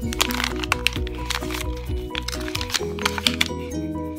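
Background music with a steady melody, over which paper crinkles and crackles repeatedly as a baby handles a paper card.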